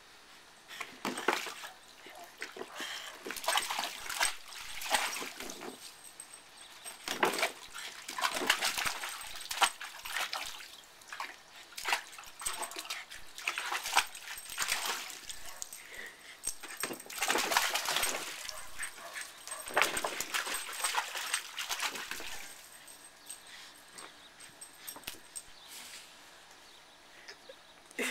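Shallow water in a plastic kiddie pool splashing in irregular bursts as a Boston terrier moves and jumps about in it, quieter for a few seconds near the end.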